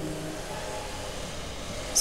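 A pause in speech with steady background noise: an even hiss with a faint low hum.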